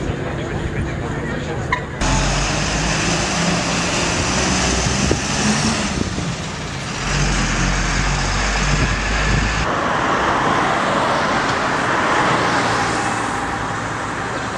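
Road traffic: cars driving past with engine and tyre noise. The sound changes abruptly about two seconds in and again near ten seconds.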